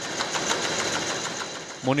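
A printing press running with a steady mechanical noise as printed sheets feed through its rollers. A man's voice begins near the end.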